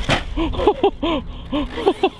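A sharp crack right at the start as the RC buggy strikes the ground, then a man laughing in a quick run of short bursts.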